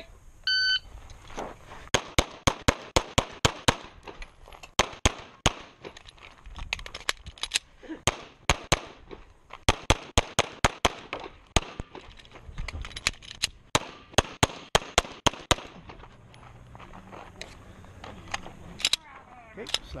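A shot-timer beep starts the stage, then a semi-automatic pistol fires dozens of shots in quick pairs and rapid strings, with short pauses between groups. The last shots come about a second before the end.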